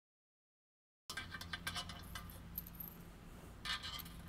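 Dead silence for about a second, then faint small metallic clinks and ticks of intake bolts and washers being handled and set into the manifold's bolt holes, with a slightly louder cluster of clinks near the end.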